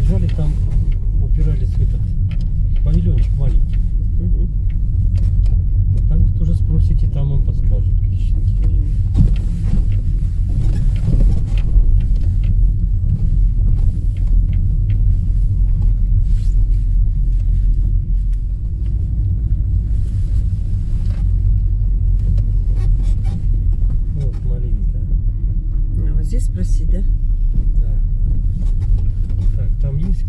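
A car driving slowly along a rural road, heard from inside the cabin as a steady low rumble of engine and tyre noise.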